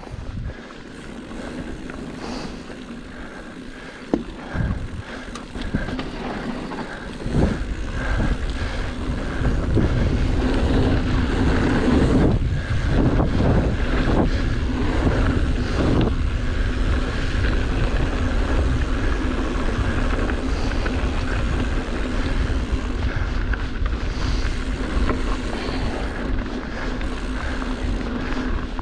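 Mountain bike riding down dirt singletrack, heard as wind buffeting the camera microphone over tyre noise on the dirt. The low rumble grows louder about a quarter of the way in as the bike picks up speed, with a few knocks from the bike over rough ground in the middle.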